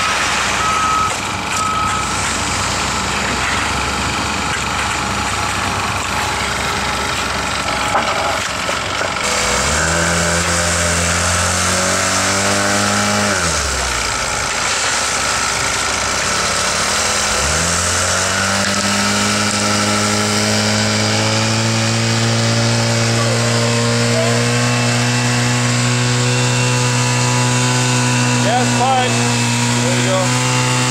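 Small gasoline engine of a power screed running fast and steady, over a background of general machinery noise. A few seconds in, its pitch sags and drops away, then climbs back up a few seconds later and holds.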